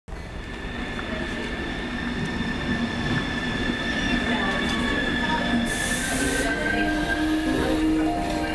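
Passenger trains running on rails: a steady rumble with a sustained high wheel squeal, and a short hiss about six seconds in. Music starts to come in near the end.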